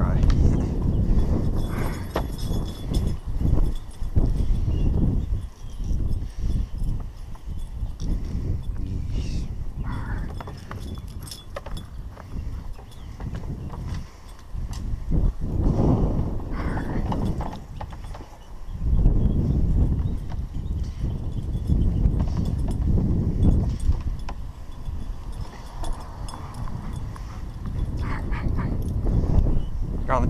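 Bath towel rubbing a wet German shepherd's coat dry, in uneven bouts of rough scrubbing, with wind buffeting the microphone.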